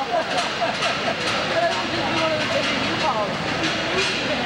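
Several voices talking at once in a large, echoing hall, over the steady running of a tractor-trailer's diesel engine as the truck creeps in through the loading door.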